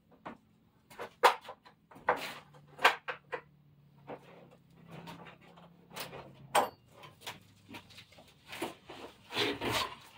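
Irregular knocks, clunks and short scraping sounds as a person handles gear at the back of an enclosed cargo trailer, echoing off its walls.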